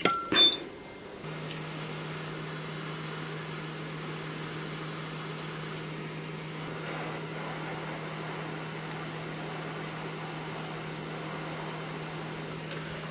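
Handheld heat gun switched on about a second in and running steadily, its fan and heating element giving an even hum with one low steady tone, as it shrinks heat-shrink tubing over a photodiode's leg.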